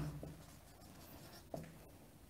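Faint scratching of a marker writing on a whiteboard.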